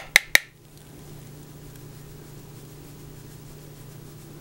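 Three quick sharp clicks right at the start, from a plastic makeup compact and brush being handled, then a faint steady low hum.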